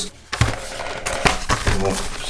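A flat cardboard retail box being picked up and handled, giving a series of light clicks and knocks with rustling in between.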